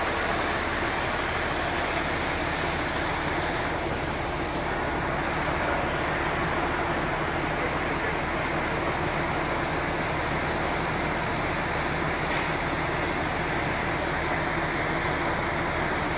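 Fire engine's diesel engine running steadily, a low even hum under a constant rushing noise.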